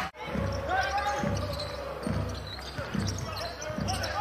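A basketball being dribbled on a hardwood arena court, bouncing about twice a second.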